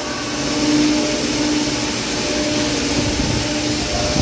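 Tire retreading shop machinery running: a steady mechanical hum with one constant mid-pitched tone over a broad rushing noise.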